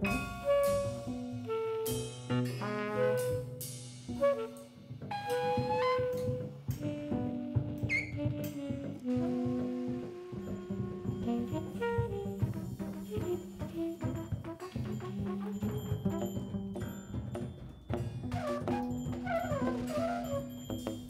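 Live jazz quintet: tenor saxophone and trumpet playing melody lines together over piano, double bass and a drum kit.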